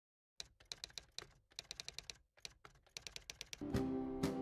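Quick, irregular clicks of keyboard typing in short bursts, then music with sustained notes coming in shortly before the end.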